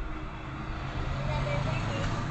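Steady rushing background noise with a low hum, getting slightly louder, coming in over an open microphone on a video call.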